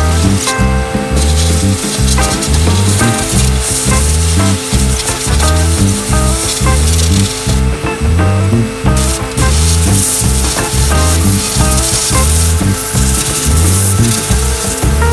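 Sandblaster nozzle spraying abrasive grit against a truck cab's sheet metal, a steady loud hiss that stops briefly about half a second in and again around eight seconds in as the blast is paused. Background music with a steady bass beat plays underneath.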